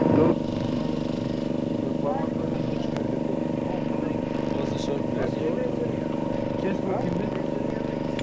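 A steady droning hum of several even tones, unchanging throughout, with faint voices talking over it.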